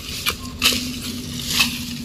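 Long-handled hand tools chopping and scraping into dry grass and dead stalks: a few irregular crunching strikes.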